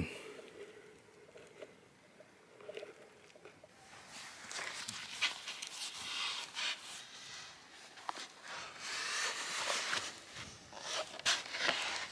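Rustling, scraping and scuffing as a foot is worked into a sandboard's strap binding and the board shifts in the sand, with a few short clicks. Quiet for the first few seconds, then irregular handling noise.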